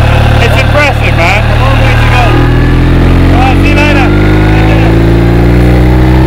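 Motorcycle engine running steadily; from a little over two seconds in, its note rises slowly and evenly as the revs climb.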